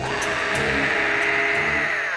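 Suspenseful background music: a sustained hissing swell in the upper-middle range, with low pulsing notes underneath.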